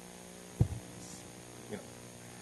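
Steady electrical mains hum with many evenly spaced overtones, the background buzz of the room's sound or recording system. One short low thump about half a second in.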